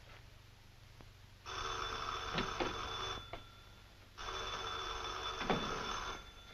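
Desk telephone's bell ringing twice, each ring lasting under two seconds with a pause of about a second between.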